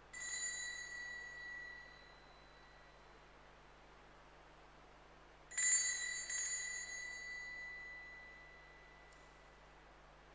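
Small handheld altar bell (Sanctus bell) rung by the server at the consecration of the Mass: one ring that fades over about two seconds, then two louder strikes about five and a half seconds in that ring on for about three seconds.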